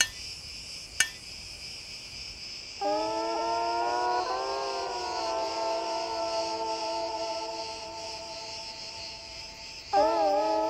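A pebble tapped twice on a slab of stone floor vitrified by fire, sharp clicks at the start and about a second in, over a steady buzz of insects. From about three seconds in, ambient music of held tones takes over and is the loudest sound.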